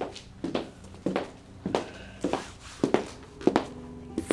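Footsteps of a child in sneakers walking across a wooden floor at a steady pace, about seven steps, a little under two a second.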